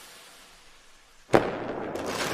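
Logo-intro sound effect: a fading hiss, then a sudden sharp bang about a second and a half in, followed by a sustained firework-like crackling hiss as the logo appears.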